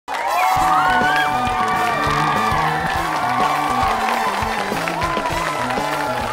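Show bumper music with a steady beat and a bass line, starting abruptly at the very beginning, with gliding melodic lines on top.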